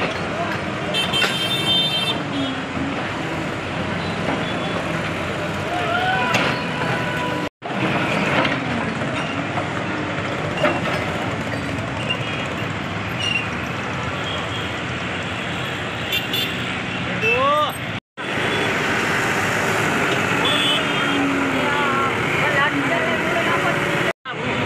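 Backhoe loader's diesel engine running during demolition, mixed with the voices of a crowd, with two brief drop-outs in the sound.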